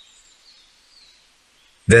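Faint, thin high chirps like distant birdsong over a quiet background, then a narrating voice starts speaking near the end.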